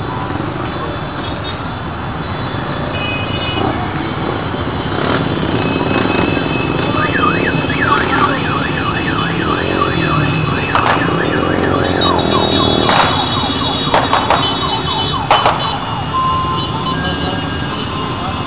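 A dense mass of motorcycles running and passing, with a siren sweeping rapidly up and down for several seconds in the middle. Short horn toots and sharp clicks break in now and then.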